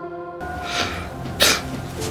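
A man crying, with two sharp sniffling breaths through the nose, the second louder, about a second and a half in, over soft background music.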